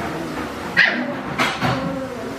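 A dog barking: a few short barks, the first the loudest.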